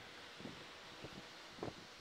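Handling noise from a handheld camera being moved: a few soft knocks and rustles over a steady faint hiss.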